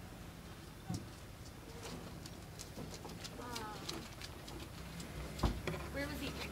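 Outdoor ambience with a bird calling: a short run of falling notes about halfway through, among faint scattered clicks. A low thump near the end is the loudest sound.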